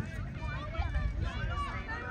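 Indistinct voices of several people talking at once, with a low rumble of wind on the microphone.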